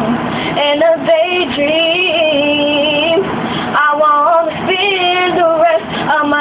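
A girl singing a slow love song solo, holding long notes and bending the pitch through vocal runs, with a long held note in the middle.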